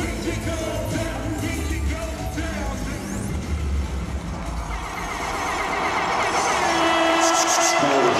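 Live pop-rap concert music over an arena PA with a heavy bass beat. About halfway through the bass falls away and crowd cheering swells louder.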